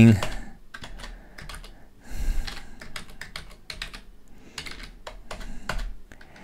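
Typing on a computer keyboard: a run of irregular key clicks as numbers are entered.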